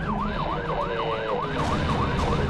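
Police car siren in a fast yelp, its pitch sweeping up and down about three times a second, over a steady low rumble.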